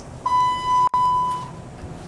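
Elevator arrival chime: a single steady electronic beep held for a little over a second, with a brief break in it just before the one-second mark.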